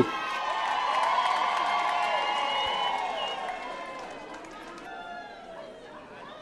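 Audience cheering with long, held high-pitched calls from several voices overlapping, loudest about a second in and then dying away.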